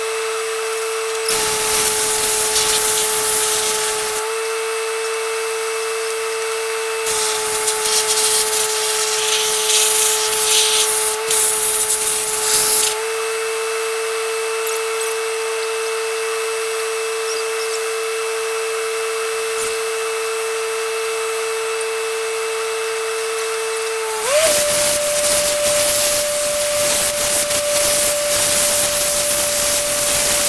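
An air compressor runs with a steady high whine while a sandblaster's air hose blasts in spells of loud hiss: about three seconds, then about six seconds, then steadily from about three-quarters of the way in, when the whine steps up in pitch.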